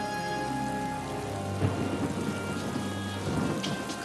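Steady rain with a rumble of thunder that swells about a second and a half in and dies away shortly before the end.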